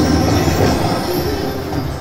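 Cash Express Mega Line slot machine playing its train sound effect as the free games begin: a loud rushing, rumbling train noise with a high steady squeal over the game's music.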